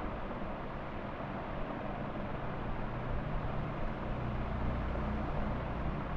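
Steady background noise with a low mechanical hum that swells from about two seconds in and eases off near the end.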